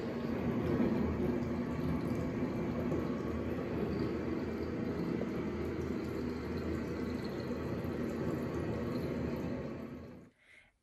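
Bath tap running into a bathtub, filling a bubble bath: a steady rush of water.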